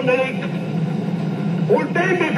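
Hitler's voice speaking German in an old film recording: a phrase ends just after the start, there is a pause, and the next phrase begins near the end. A steady low background noise from the recording runs under it.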